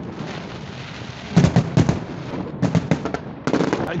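Aerial fireworks going off: a crackling haze broken by sharp bangs, which come in a cluster about a second and a half in, a quick run of bangs near three seconds, and another just before the end.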